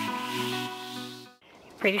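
Background music of held electronic chords, fading out and stopping about three-quarters of the way in.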